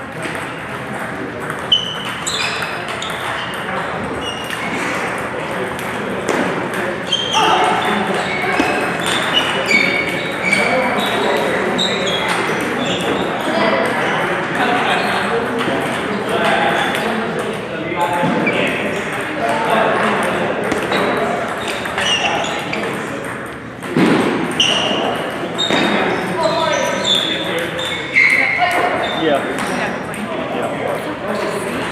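Table tennis ball being hit back and forth, with many short sharp pings off the paddles and table, and voices talking in the background.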